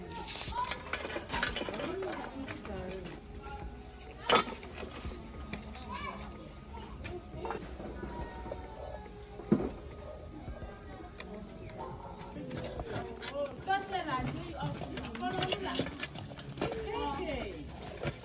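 Children's voices at play in the background, with a sharp knock about four seconds in and another about nine and a half seconds in.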